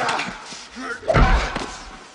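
Movie fight sound effects: a sharp hit at the start and a heavy, deep body impact about a second in, with men's grunts of effort during the struggle.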